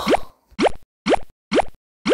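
Cartoon sound effect: a run of short bloops, each quickly rising in pitch, repeating evenly about twice a second.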